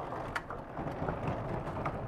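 Sliding lecture-hall blackboard panels being pushed along their vertical tracks: a steady rumbling scrape with a click about half a second in.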